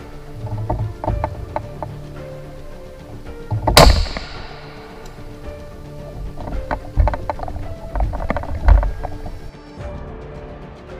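A single rifle shot about four seconds in, from a Ruger AR556 chambered in .300 Blackout firing a 125-grain round, with a short ringing tail. Duller knocks of the rifle and gear being handled follow, over background music.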